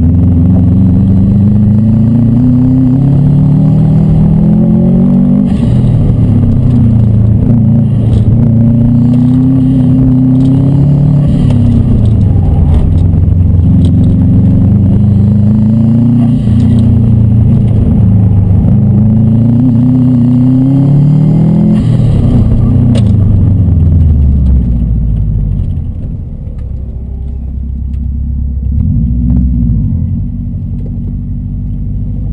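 Subaru WRX STI's turbocharged flat-four engine, heard from inside the cabin, revving up and dropping back over and over as the car is driven hard through an autocross course. About 25 seconds in it falls to a low, quieter run, with one short rev near the end.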